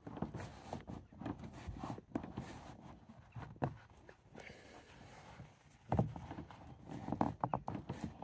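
Manual window-winder handle being rocked back and forth with a microfibre cloth wedged behind it, giving faint cloth rubbing and irregular light plastic clicks, with a sharper knock about six seconds in. The cloth is being worked in to push the handle's spring clip off.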